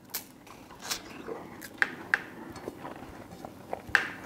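A man biting into and chewing a slice of ripe Tashkent melon with firm, slightly coarse flesh: a string of short, crisp crunches at irregular intervals.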